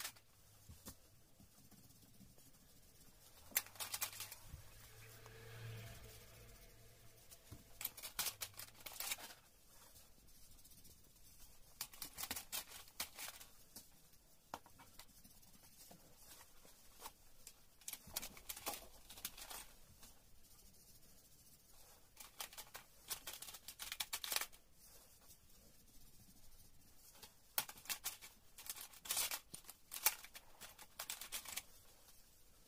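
Coloured pencil scratching on paper in short bursts of scribbling, a few seconds apart.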